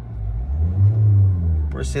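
Kia Seltos 1.5 CRDi four-cylinder turbo-diesel engine idling, heard from inside the cabin as a low, quiet rumble. About a second in its pitch and loudness rise and fall once, as the revs briefly climb and settle.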